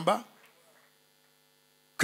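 A man's voice over the microphone cuts off a fraction of a second in, leaving a faint, steady electrical hum from the public-address system.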